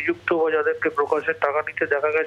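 A man speaking in Bengali over a telephone line, his voice thin and cut off in the highs.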